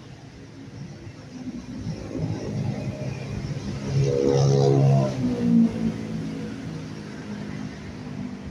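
A motor vehicle passing close by, its engine sound building up, loudest about four to five seconds in, then fading away.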